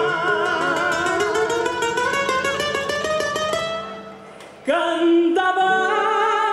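A woman singing a folk song with vibrato to strummed acoustic guitar. She holds a long note over quick guitar strokes, breaks off briefly about four seconds in, then comes back in strongly on a new note.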